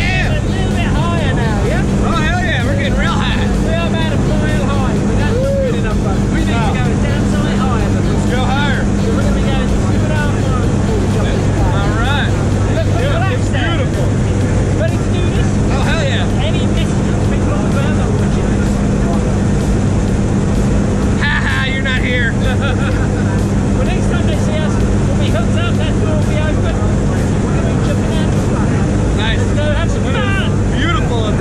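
Jump plane's engine and propeller droning steadily inside the cabin during the climb, a constant low hum, with voices talking over it.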